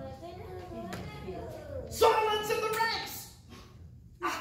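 Children's voices, low at first, then one loud, held vocal call about two seconds in.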